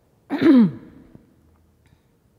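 A woman clearing her throat once: a single short vocal sound with falling pitch, about a quarter of a second in.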